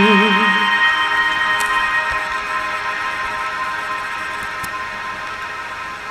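A woman's sung note, held with vibrato, ends just under a second in. The backing track's final chord then rings on and slowly fades away.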